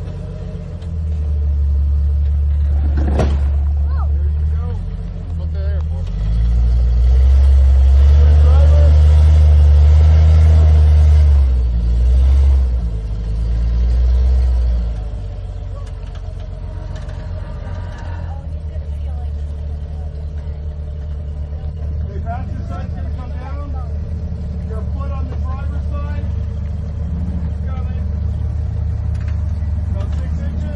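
Lifted Jeep Cherokee XJ engine rock crawling, revving in long throttle surges as it works over boulders, then running steadily at low revs. A single sharp knock sounds about three seconds in.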